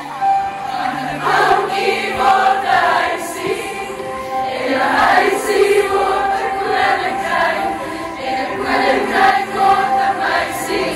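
A large group of teenage girls singing a song together as a choir, loud and unbroken, swelling and easing between phrases.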